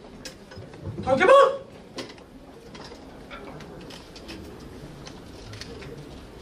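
A man's single short shout about a second in, a martial-arts cry during a staff demonstration, followed by faint scattered taps and rustles.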